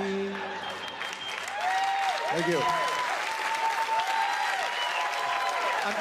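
Stand-up comedy audience applauding after a punchline, with faint voices rising and falling over the clapping.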